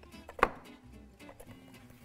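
A single sharp click about half a second in, a kitchen utensil knocking against a glass mixing bowl as chopped onion with lemon juice and spices is stirred. Faint background music runs underneath.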